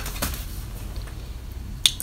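Steady low room hum and faint hiss, with one sharp click near the end.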